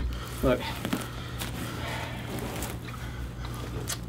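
A few faint clicks and rustles of people moving on a stage floor over a steady low electrical hum.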